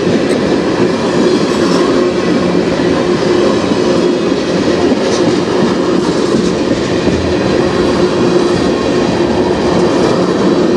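Freight train tank cars rolling past at close range: a steady, loud rumble of steel wheels on rail, with a few faint clicks from the wheels.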